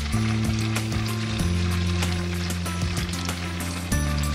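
Flush water rushing and splashing from a toilet into a test cylinder, a steady crackling hiss, over background music of held low notes that shift pitch about one and a half seconds in.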